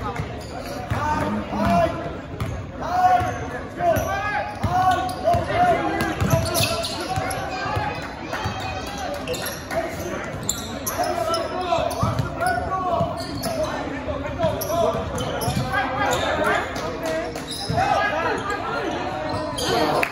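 A basketball bouncing on a hardwood gym floor during a game, with scattered thuds among voices calling out across the gym.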